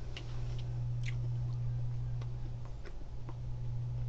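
A person chewing a Warheads Hot Heads candy: faint, scattered wet mouth clicks over a steady low hum.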